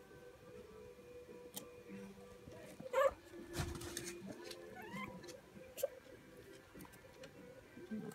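Three-week-old puppies squeaking and whining, with one loud wavering yelp about three seconds in and a short rising whine a second or so later.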